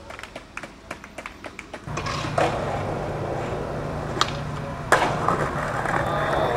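Skateboard on concrete: a few light clicks, then from about two seconds in the steady rumble of urethane wheels rolling, broken by sharp cracks of the board, the loudest near five seconds in.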